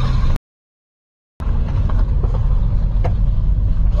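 Car cabin with the steady low rumble of engine and road noise as the car drives past a fire. Two faint sharp cracks come about two and three seconds in, likely asbestos-cement roof slate bursting in the blaze. The sound cuts out completely for about a second near the start.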